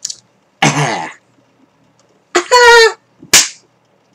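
A man's voice making wordless noises: a short rough grunt, then a held high-pitched squeal, followed by one sharp smack.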